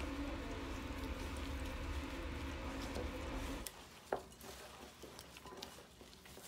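Gloved hands kneading crumbly pecan cookie dough in a glass bowl: faint squishing and rustling over a low steady hum. It cuts off a little past halfway, leaving near silence with a few faint clicks.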